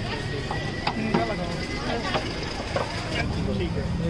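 Busy street-market ambience: background voices and traffic hum, with a few short sharp knocks from the food stall's steel utensils.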